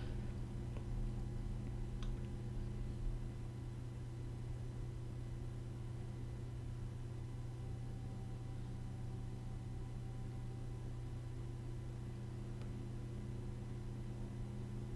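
CPU cooler fan whirring away with the overclocked Intel Core i7 950 at full load during a render benchmark: a faint, steady hum.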